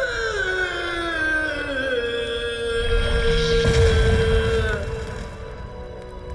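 Dramatic background music: sustained notes, one line sliding downward while a steady tone is held, with a deep low swell about four seconds in, easing off near the end.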